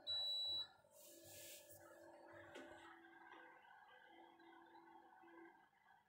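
A single high-pitched electronic beep lasting about half a second, at the start. Faint steady tones follow underneath.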